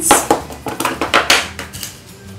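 A small clear plastic box of sewing pins being snapped open and handled on a wooden table: a quick string of sharp plastic clicks and clatters, five or six of them in under two seconds.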